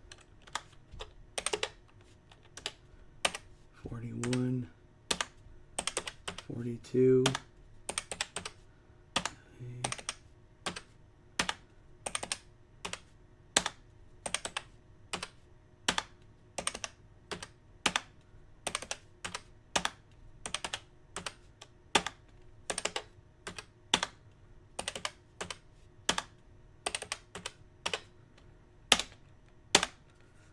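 Computer keyboard keys pressed one at a time: sharp, separate clicks, roughly one to two a second with uneven gaps.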